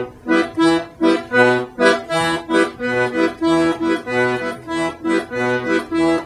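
Piano accordion's left-hand bass buttons playing a steady oom-pah polka rhythm in E minor. Single low bass notes on E and the contrabass B alternate evenly with short E minor chords.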